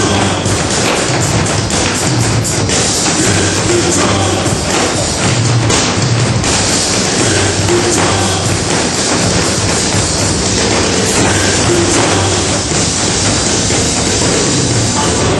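Group drumming: many performers beating together on floor-standing drums, a dense run of thuds and taps in time with loud music.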